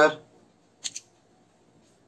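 Two quick, sharp clicks just under a second in, from pens and a plastic ruler being handled on a tabletop as one pen is set down and another picked up.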